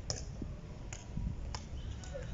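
Three light taps on stone flagstones, a little before one second apart, over a steady low rumble.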